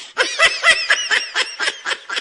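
A woman laughing: a quick run of short giggling laughs that slows and fades near the end.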